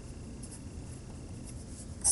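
Quiet room tone: a low steady hum and faint hiss, with a faint thin high tone that stops about a second and a half in.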